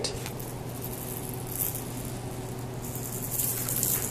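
Faint rustling of a kitten's fur brushing against the phone's microphone, a little louder near the end, over a steady low hum.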